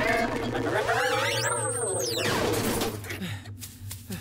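Cartoon sound effects for a small flying robot going out of control: a loud noisy whoosh carrying a warbling whine that climbs and then falls away over about two seconds, quieter near the end as the robot comes down smoking.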